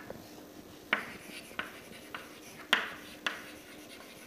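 Chalk writing on a chalkboard: short, sharp taps and scratches of the chalk strokes, about five of them at uneven intervals, the loudest a little before three seconds in.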